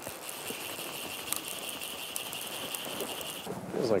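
Fly reel's drag screaming steadily as a hooked Atlantic salmon runs and pulls line off, stopping suddenly about three and a half seconds in; it sounds like a heavy fish.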